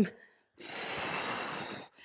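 A woman's long, forceful exhale lasting over a second, a breath pushed out through the effort of a dumbbell sit-up.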